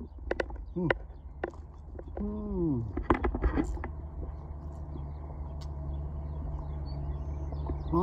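A man drinking from a plastic cup: a few light clicks as the cup is handled, short hums from his throat that fall in pitch, and a noisy burst of gulping and slurping about three seconds in. A steady low hum runs underneath.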